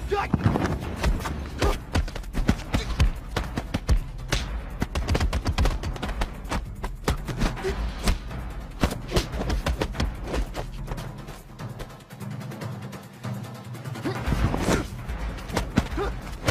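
Martial-arts film fight soundtrack: a musical score with a steady low bed, overlaid by rapid punch and kick impact effects, many sharp thuds in quick succession. The low music drops out for a couple of seconds near the end while the impacts continue.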